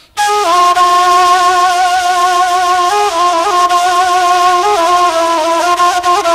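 A flute playing a lament melody that enters suddenly just after the start. It holds long notes decorated with quick ornamental turns.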